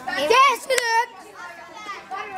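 Children's high-pitched excited voices, a quick burst of calls and shouts in the first second that then drops away to quieter background chatter.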